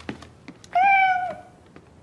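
A cat meowing: one drawn-out, steady-pitched call of a little over half a second near the middle, after a couple of faint clicks.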